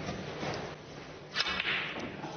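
Sharp click of snooker balls being struck, about one and a half seconds in, followed by a brief burst of noise.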